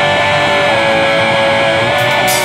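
Rock music: electric guitars ringing out a sustained chord, with a high note held steady over it.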